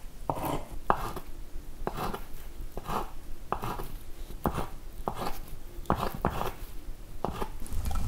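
Kitchen knife chopping hard-boiled egg whites on a wooden cutting board: a steady run of sharp knife strikes on the board, about one to two a second.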